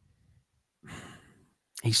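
A man's short, breathy sigh about a second in, lasting under half a second; a man's voice starts talking near the end.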